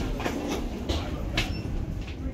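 Footsteps on a jet bridge's hollow floor, a sharp step about every half second, over a steady low rumble.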